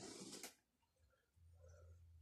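A brief rustle of fabric as a sofa cover is tugged straight, in the first half second, then near silence with a faint low hum.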